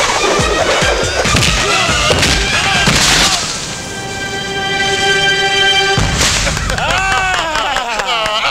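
Film fight soundtrack: music with a rapid run of sharp hits for about three seconds, then a long held chord, and a sudden crash at about six seconds. Voices come in near the end.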